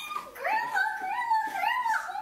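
A young woman squealing with excitement in a high, childlike voice: a continuous run of rising and falling squeals.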